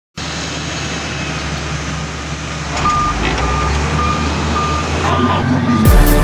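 Heavy construction machine's engine running steadily, with a reversing alarm beeping at an even pace from about three seconds in. A hip hop beat hits right at the end.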